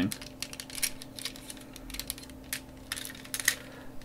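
Irregular small clicks and clacks of a Power Rangers Omega Megazord toy's parts, plastic and diecast, knocking together and snapping into place as they are moved by hand.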